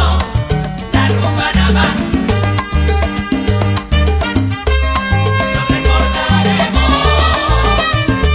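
Salsa band recording in an instrumental passage with no singing: a bass line repeats a steady pattern under sharp percussion.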